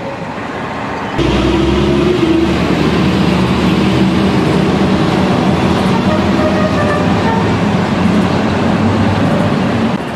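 Street traffic with vehicle engines running close by. The sound cuts in abruptly and louder about a second in, then continues steadily with a low rumble.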